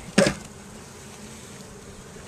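Honey bees humming steadily from an open hive, with one short sharp sound just after the start.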